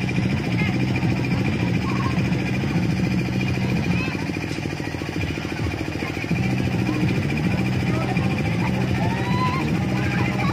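A motor drones steadily with a fast, even pulse, dipping in level for about two seconds in the middle. Children's voices call faintly in the background.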